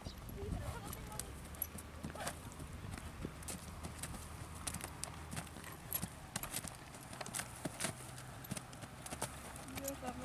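Hoofbeats of a horse trotting on a dirt arena: a run of irregular soft thuds and clicks.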